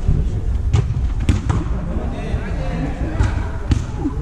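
A football being kicked on artificial turf: about four sharp thuds of the ball, over indistinct shouts from the players.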